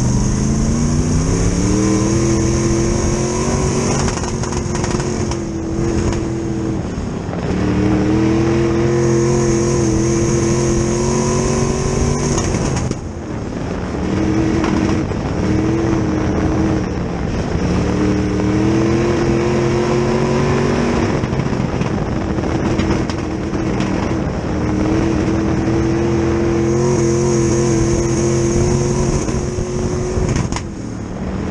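A dirt-track Sportsman race car's GM 602 crate V8 heard from inside the car at racing speed. The engine note climbs in pitch on each straight, holds, then drops away into the turns, about four times.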